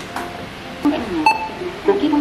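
An admission-ticket vending machine's touchscreen gives one short electronic beep a little over a second in, as a button is pressed. Low voices murmur in the background.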